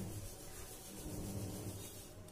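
Rubbing and handling noise on a hand-held phone's microphone as it moves, over a low steady hum.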